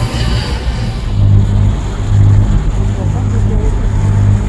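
Steady low drone of a catamaran's engine as the boat motors along, growing louder about a second in, with faint voices talking in the background.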